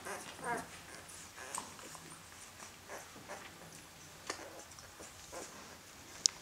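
Faint whimpers and squeaks of eight-day-old puppies, with a short wavering whine about half a second in and a few thin high squeaks after.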